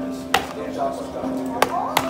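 Sharp cracks and snaps of a solid chocolate Porsche 911 model being broken by hand, three in all, two of them close together near the end, over background music and chatter.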